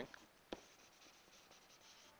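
Faint sound of a stylus writing on an interactive whiteboard: one sharp tap about half a second in, then only faint scratching under room hiss.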